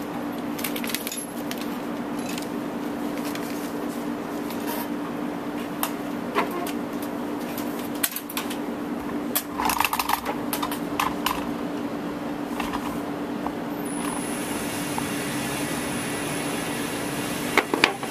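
Scattered light metallic clicks and clinks from rifle and cartridge handling on a range bench, with a denser, louder run of clinks about halfway through, over a steady ventilation hum. A faint high whine comes in after about fourteen seconds.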